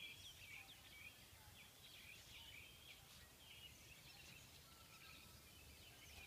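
Faint birdsong: a steady run of short chirps and whistles from birds, heard over quiet background noise.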